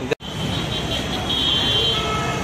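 Busy city street traffic: a steady mix of engine and road noise, with a thin, steady high tone over it that is loudest in the second half. It starts after a brief, sudden dropout right at the beginning, which cuts off a man's voice.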